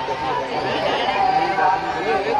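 Chatter of a large crowd, many people talking at once.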